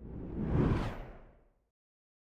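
Whoosh sound effect from an animated logo intro: a single rush of noise that swells, peaks a little over half a second in, and fades out by about a second and a half.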